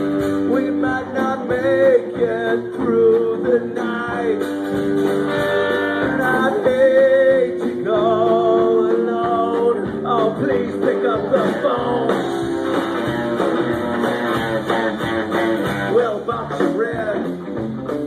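A rock band playing live, with electric and acoustic guitars, bass and drums and a male lead vocal over them, recorded on a phone's microphone.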